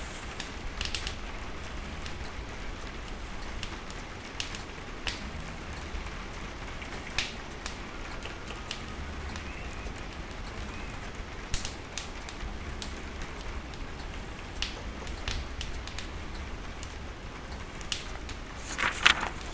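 Wood fire crackling in a wood-burning stove, with irregular sharp pops, over a steady hiss of rain and a low rumble of wind.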